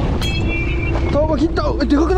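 Wind and sea noise at the side of a fishing boat, over the boat's steady engine hum. A person's voice calls out from about a second in.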